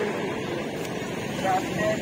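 Roadside market ambience: a steady traffic rumble with indistinct voices in the background.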